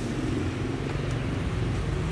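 An engine idling steadily, a continuous low hum.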